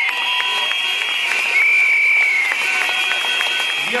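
Protest crowd reacting with many shrill whistles, blown in long and short high blasts over a steady din of clapping and cheering.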